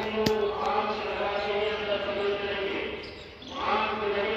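Devotional chanting by voices singing long, held notes at a Vishnu temple; it fades briefly near the end, then resumes. A single sharp knock comes just after the start.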